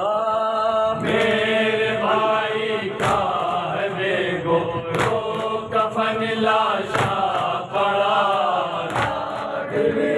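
A group of men chanting a noha kalaam together in unison, with a sharp matam strike, hands beaten on the chest together, about every two seconds.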